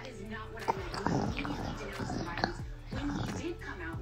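Faint, indistinct vocal sounds in short whimper-like bits, with no clear words.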